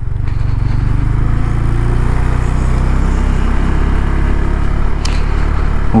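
KTM 390 Adventure's single-cylinder four-stroke engine running steadily as the bike rides along, with a steady hiss over it and one short click near the end.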